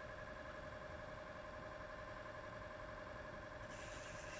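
A faint steady hum holding a few constant tones, with a brief high hiss near the end.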